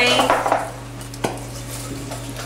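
An aerosol can of cooking spray giving a short hiss that fades out in the first half-second, then a single sharp click a little over a second in.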